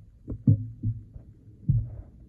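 Several short, dull low thumps, the loudest about half a second in and another near the end, over a faint hum: handling noise from the recording camera being moved and turned.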